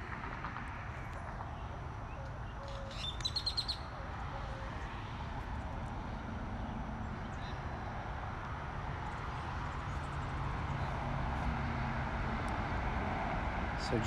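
Steady hum of road traffic, with a bird's quick run of high chirps about three seconds in.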